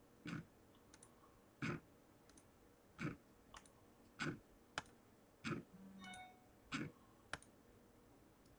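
Computer mouse button clicking, single sharp clicks about every second and a half, eight or so in all, as a web list randomizer is re-run again and again.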